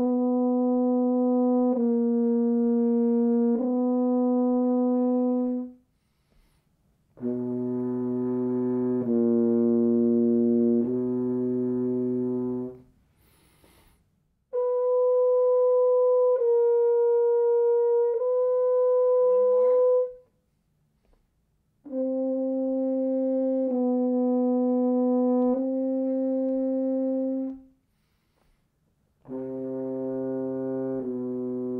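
French horn playing sustained tongued notes in a note-tasting accuracy exercise, three notes to a phrase: a held note, one a step lower, then back to the first, each about two seconds long. Five such phrases at different pitches, with a short gap between phrases; the last begins near the end.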